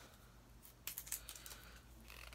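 Faint, scattered small clicks and crinkles of plastic as a lip liner pencil's tight cap and plastic seal are worked off by hand.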